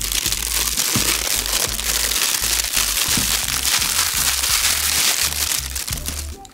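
Plastic shrink-wrap being peeled and crumpled off a cardboard product box: a continuous, dense crackling and crinkling.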